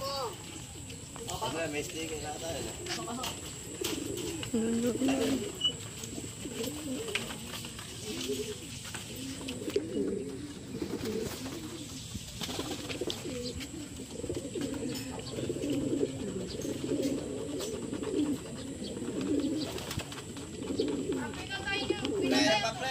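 Racing pigeons cooing, low warbling coos repeating and overlapping one after another.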